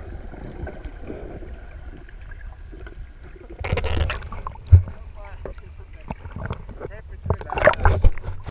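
Muffled underwater rumble, then water splashing loudly as the camera breaks the surface about four seconds in, with a sharp knock just after. Water sloshes and splashes at the surface near the end.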